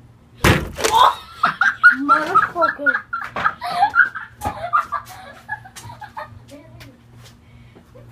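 A loud, sudden smack about half a second in, with a second hit just after, followed by several seconds of excited, unclear voices.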